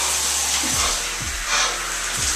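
Electric shower spraying water in a steady hiss onto a person's head and soaked shirt, with low thuds of a background music beat underneath.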